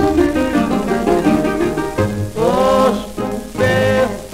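Instrumental passage of a 1953 Greek popular song, played back from a 78 rpm record, with a melody line that bends and slides on one note a little past halfway.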